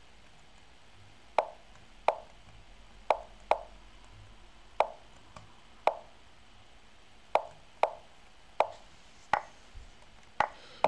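Online chess move sound effects: about eleven short, sharp wooden clicks at irregular intervals, one for each move played in quick succession.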